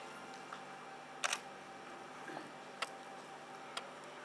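Quiet room tone with a faint steady hum, broken by a few sharp clicks: a double click a little over a second in, then two single clicks about a second apart.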